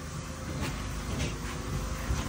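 Light knocks and scrapes of a sheet of drywall being handled against the wall, over a steady low hum.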